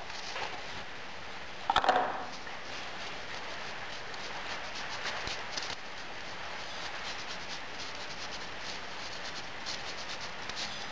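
Moulding facing sand being riddled through a round hand sieve: a steady grainy rustle of sand rubbed through the mesh and pattering down. A single knock comes about two seconds in.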